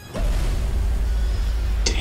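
Action-film trailer sound effects: a deep, heavy rumble that starts suddenly just after the start and holds, with a sharp crash near the end as ice bursts upward under the vehicles.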